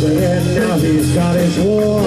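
Live blues-rock band playing loudly, with electric guitar and electric bass over drums and a man singing a held, gliding vocal line.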